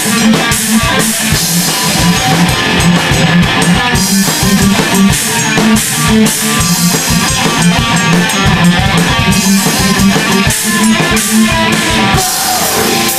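Rock band playing live in a rehearsal room: electric guitars over a drum kit, loud and steady.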